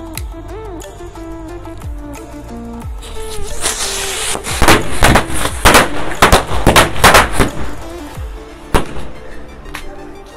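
A skyrocket launching with a rushing hiss about three seconds in, then a string of small bijli firecrackers going off in a rapid crackling run of loud bangs for about three seconds, with a few last scattered bangs near the end.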